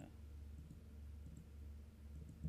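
Faint computer keyboard clicks, a few scattered ticks, over a low steady hum.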